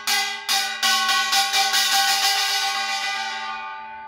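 Kkwaenggwari, a small Korean brass hand gong, struck with a stick. A few separate strokes are followed by a fast run of about six or seven strokes a second. Its high-pitched, very loud metallic ringing holds between strokes and dies away near the end.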